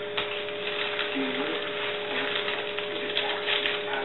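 A steady background hum, with a few light clicks from a dog's claws on a wooden floor as it moves about and sits down.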